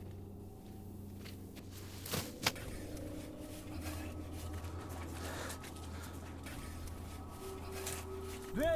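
A low steady hum with a few faint sustained tones above it, and two sharp clicks about two and two and a half seconds in; the hum grows a little stronger near the middle.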